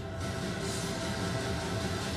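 Film trailer soundtrack playing: a steady low rumble with held music tones over it.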